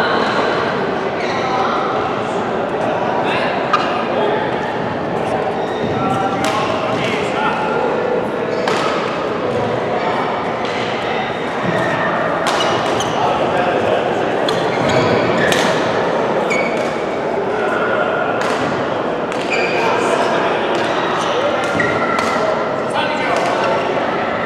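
Badminton rackets striking a shuttlecock during rallies: sharp, irregular hits several seconds apart, echoing in a large hall. A steady background of many people's voices runs under the hits.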